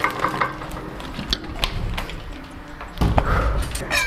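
Kitchen clatter from a wooden spatula stirring meat in a sac pan: scattered light clicks and scrapes, then a heavier thud about three seconds in.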